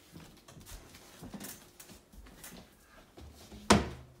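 Soft footsteps on a floor, then a wooden kitchen cabinet door pulled open with one sharp clack near the end.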